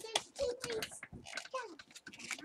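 Handling noise from metal marshmallow roasting sticks and skewers in a fabric zippered case: irregular small clicks and rattles, with a brief murmured voice.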